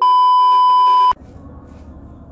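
A loud, steady, single-pitch test-tone beep of the kind played with TV colour bars, lasting about a second and cutting off suddenly.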